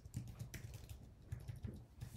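Typing on a computer keyboard: a quick, irregular run of faint key clicks.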